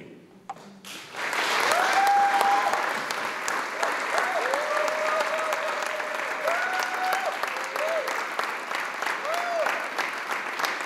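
A large audience applauding, the clapping swelling in about a second in and going on steadily, with several long whooping cheers rising over it.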